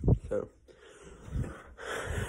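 A spoken "so", then a breathy exhale close to the microphone near the end.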